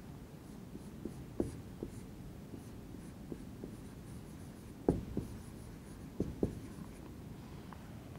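Marker pen writing on a whiteboard: faint, scattered taps and short strokes of the felt tip on the board.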